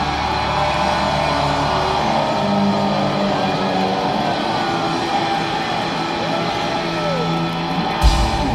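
Live rock band: an electric guitar through a Matchless amp holds sustained notes with slow bends sliding up and down in pitch, over a wash of cymbals. A low held bass note drops out about two seconds in.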